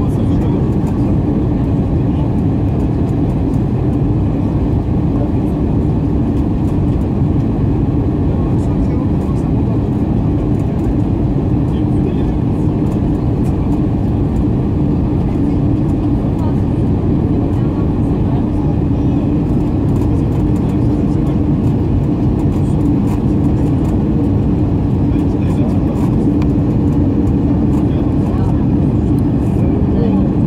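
Cabin noise of an Airbus A319-111 on final approach: the CFM56 engines running at approach thrust and the rush of air past the fuselage make a steady roar with a steady hum, heard from a window seat beside the engine.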